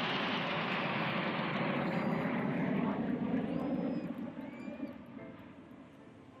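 Jet engines of the Red Arrows' BAE Hawk T1 formation flying past, a loud, steady rushing noise that fades away over the last two seconds.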